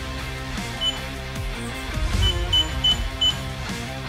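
Background music over short electronic beeps from the digital keypad of a Godrej NX Advance locker as its keys are pressed: one beep about a second in, then four quick beeps in the second half.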